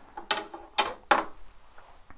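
A quick run of about five sharp clicks and small knocks within a second or so, as of small hard objects being handled, then only faint ticks.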